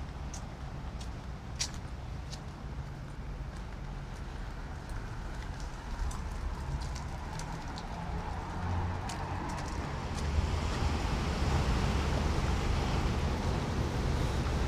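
Street ambience of car traffic on a town street, with a steady low rumble and faint light clicks. The noise grows louder from about ten seconds in.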